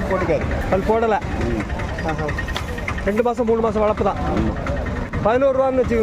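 Voices talking over a steady, low engine rumble from a vehicle running at idle.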